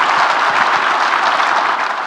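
Audience applauding: many hands clapping in a dense, steady patter that begins to fade near the end.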